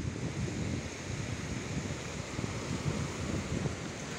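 Wind buffeting the microphone over the wash of small waves lapping at a shoreline, a steady hiss with rough, fluttering rumble underneath.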